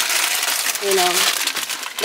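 A torn shopping bag crinkling and rustling as it is handled, dense crackling for about a second and a half before it dies away.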